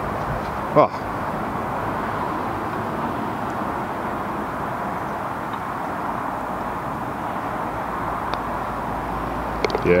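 Steady outdoor background noise, an even hiss like distant traffic, with no clear events; one brief short sound about a second in.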